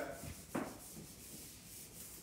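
Eraser rubbing across a whiteboard, wiping off the writing in faint strokes.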